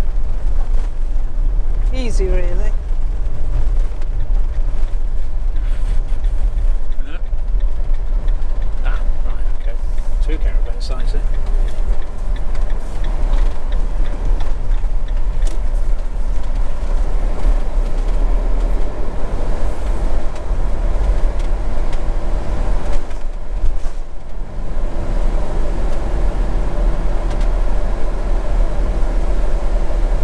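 Motorhome driving along a lane, a steady low rumble of engine and road noise heard from inside the cab. The sound dips briefly a little over three-quarters of the way through, then settles into a steadier hum.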